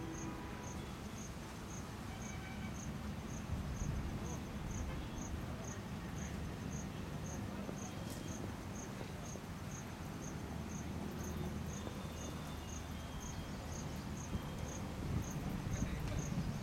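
An insect chirping steadily: a short high-pitched pulse repeated about two to three times a second, over a low background rumble.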